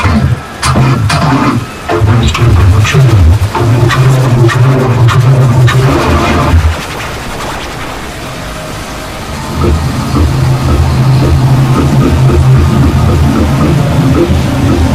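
Loud, heavily distorted music with a deep low hum and sharp hits early on, dropping quieter for a couple of seconds past the middle before coming back.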